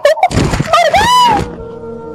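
A few knocks from the struggle, then a woman's high-pitched cry that arches up and falls away as she is throttled on a bed. A steady, sustained music note comes in near the end.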